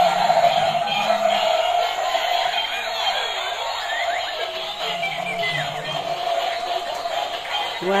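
Several battery-powered dancing toys playing their built-in electronic songs at once: a steady jumble of tinny music and synthetic voices.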